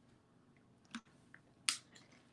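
Drinking from a clear plastic water bottle: mostly quiet, with a couple of short clicks, the sharper one about a second and a half in.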